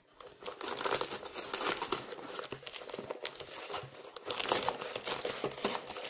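Packaging crinkling and rustling as hands rummage in a torn padded paper mailer and draw out an item wrapped in plastic. The crackling is continuous, with louder flurries about a second in and again near the end.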